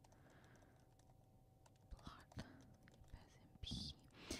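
Faint typing on a computer keyboard: soft, scattered key clicks as a line of code is typed. A short breathy hiss comes near the end.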